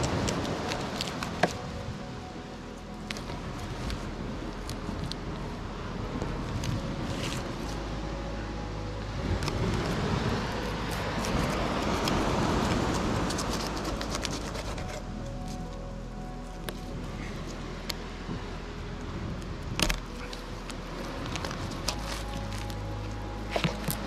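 Background music with held tones and a steady low bass. Under it are occasional sharp clicks and knocks from a knife cutting through a fish on a wooden board.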